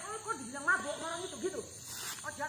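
Indistinct voices talking, with a short burst of hiss near the end.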